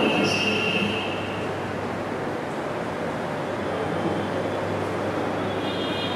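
Steady background noise of a classroom with a low hum, as from fans or ventilation, and a faint high tone in the first second and a half.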